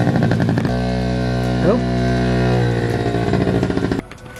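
A small Yamaha kids' dirt bike engine runs at a steady pitch as it is ridden, with a change in the engine note at about three seconds.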